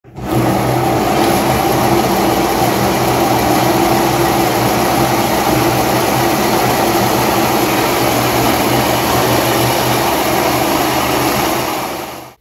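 Large home-built pulse motor running at speed: a steady whir and hum from the spinning drum rotor and its pulsed drive coils. The sound fades out near the end.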